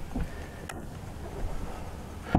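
Low, steady background noise, with a single short click a little under a second in.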